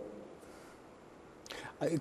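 A pause in the talk with faint background hiss. Near the end comes a short breathy sound, then the first sound of a man's voice.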